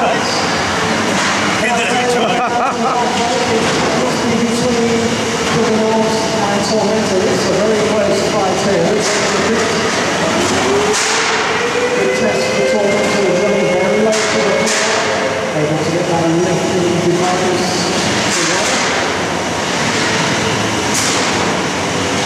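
Featherweight combat robots driving and shoving each other on a steel arena floor: electric drive motors whining, their pitch sliding up now and then, with a few sharp metal knocks. Steady crowd chatter runs underneath.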